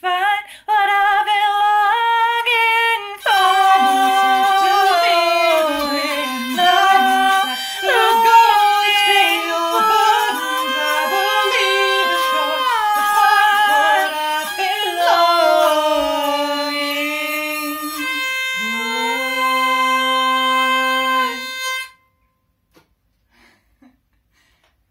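Hurdy-gurdy playing a folk melody over its steady drone, with a woman's voice singing wordlessly along. It ends on a long held chord that cuts off abruptly about two seconds before the end.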